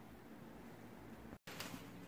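Near silence: faint room tone in a small indoor space, broken by a brief total dropout about one and a half seconds in.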